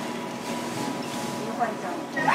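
Restaurant room ambience: a steady background haze with faint voices murmuring in the background and a thin steady hum.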